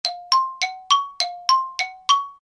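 A bell-like chime sound effect striking about three times a second, alternating between a lower and a higher note, each strike ringing briefly.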